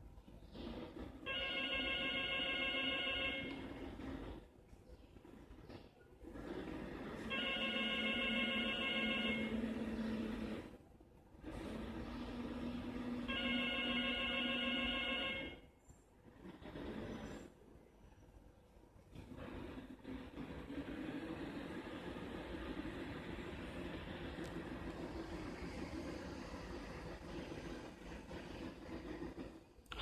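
Drive motors of a small mecanum-wheel robot platform whining with wheel-rolling noise on a tiled floor. They run in three separate moves of about two seconds each, each a steady multi-tone whine. About two-thirds of the way in comes a longer, steadier run of about ten seconds without the whine.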